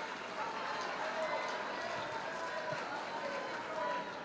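Indistinct murmur of many voices from an audience, with no clear words.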